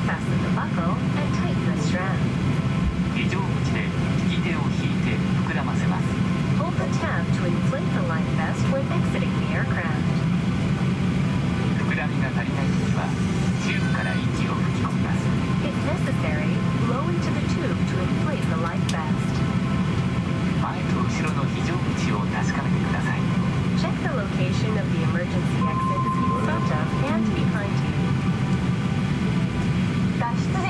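Steady low hum inside a Boeing 737-800 airliner cabin during pushback, with a cabin-crew safety announcement talking over the public-address system.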